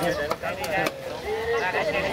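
Several people talking at once, with a few sharp knocks in the first second.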